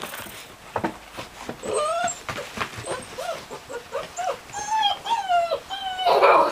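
Six-week-old Bernese mountain dog puppies whimpering and whining in a string of short high calls, some rising and falling, starting about a second and a half in.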